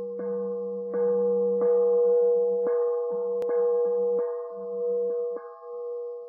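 Meditative instrumental intro music: a steady ringing tone held beneath plucked notes struck about once a second.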